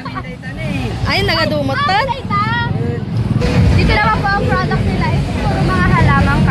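Voices talking and laughing close by, with a steady low rumble underneath.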